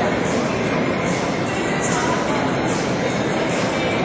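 Steady ambience of an indoor show-jumping arena: a continuous wash of crowd murmur and hall noise, with faint soft puffs repeating about every three-quarters of a second.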